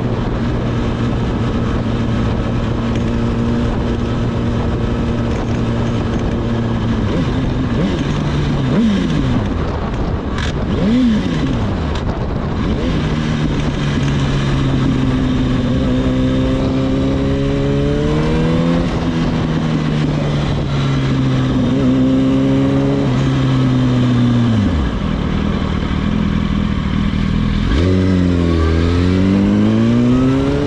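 Sport motorcycle engine heard from the rider's position: holding a steady note at first, then easing off, then rising in pitch through a few gear changes, with quick throttle blips near the end as the bike slows. Wind rushes over the microphone throughout.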